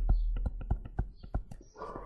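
Stylus tapping and clicking on a tablet screen during handwriting: an irregular run of sharp clicks, several a second.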